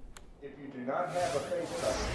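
A steady hiss comes up about two-thirds of a second in, with faint voices underneath: the open live microphone picking up the background of an airport terminal hall.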